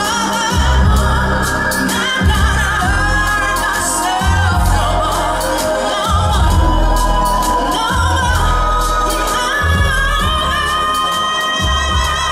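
Live pop song: a woman sings a long, wavering melodic line into a microphone over keyboards, a deep bass that holds notes in long blocks with short breaks, and a light beat.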